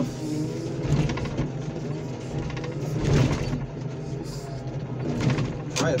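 Hydraulic car crusher running with a steady drone from its power unit while the lid presses down on a flattened SUV. The car body's metal and glass crunch under it, louder about three seconds in, as the side mirror is knocked off.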